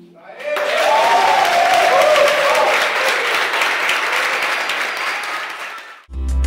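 Audience applauding, with a few voices cheering in the first couple of seconds; the clapping fades out near the end.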